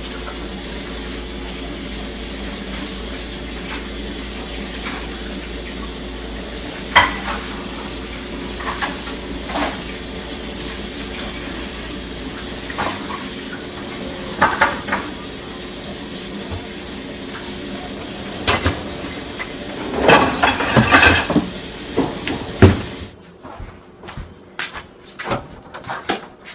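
Dishes and cups clinking and clattering as they are loaded into a dishwasher's wire racks, in irregular bursts over a steady hum. Near the end the hum stops suddenly and only a few lighter knocks follow.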